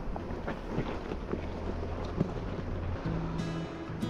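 Off-road Jeep's engine running low and steady at crawling pace, with scattered small crunches and clicks from the tyres on loose rock. About three seconds in, background music comes in.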